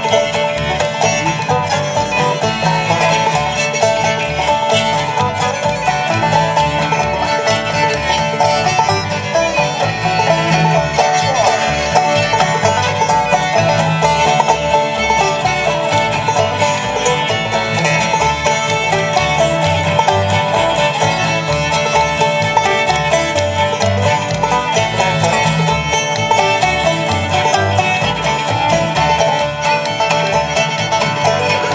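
Old-time string band playing live: a frailed (clawhammer) banjo and a fiddle over strummed rhythm, with a steady low beat throughout.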